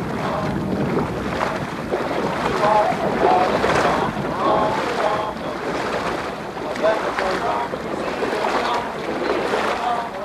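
Wind buffeting the microphone and water washing against the hull of a large paddled canoe. The crew's voices come through faintly at times.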